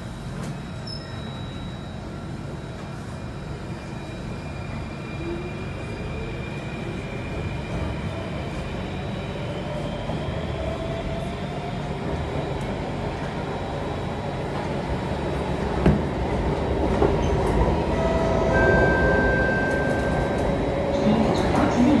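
Alstom Metropolis C830 metro train pulling away from a station and accelerating, heard from inside the car. The traction motors give a whine that rises in pitch over a growing rumble of wheels on rail. There is a single knock about two-thirds of the way in.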